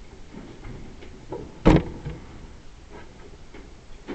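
A single sharp knock a little before halfway through. It is followed by faint scattered taps and rubbing as a marker starts writing on the board near the end.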